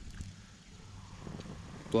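Faint crackling of a small kindling fire just catching, a few light ticks over a quiet background, with a spoken word at the end.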